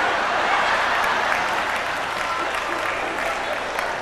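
Audience applauding, loudest in the first second and slowly dying down.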